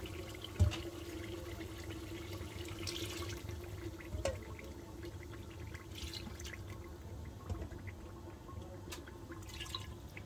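Blended chilli being ladled from a steel bowl into an aluminium cooking pot: quiet pouring and dripping of liquid, with a few light spoon clicks and one low knock about half a second in, over a faint steady hum.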